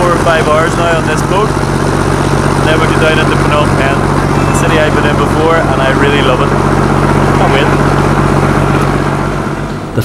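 Passenger boat's engine running at a steady drone under way, with voices talking over it.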